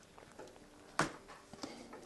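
A single sharp click about a second in, with a few fainter taps around it: hands working a hose free from a motorcycle's airbox and its plastic fittings.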